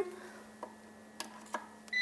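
A few faint, sharp clicks of banana-plug test leads being pushed into a 12 V AGM battery's terminal sockets, over a faint steady electrical hum.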